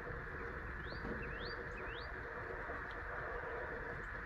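A small bird chirping: three quick rising chirps about a second in, then a faint fourth, over a steady low background hiss.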